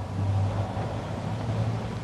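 A steady low hum over a faint background hiss, with no speech.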